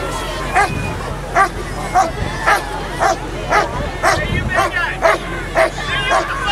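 Police K-9 dog barking over and over on its leash, a steady run of barks about two a second.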